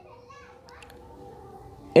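Faint background voices, sounding like children, with a few faint, brief sounds a little under a second in.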